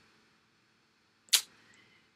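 Near silence broken once, a little past halfway, by a single short, sharp click.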